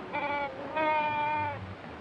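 A man's voice making animal-like calls: two steady, held calls, a short one and then a longer one of nearly a second.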